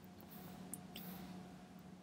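Near silence: faint room tone with a low steady hum, and one faint short tick under a second in.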